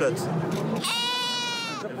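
A two-week-old lamb bleats once, a single high call lasting about a second, starting just under a second in and dipping slightly at its end.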